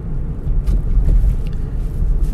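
Low, steady rumble of a car being driven, heard from inside the cabin.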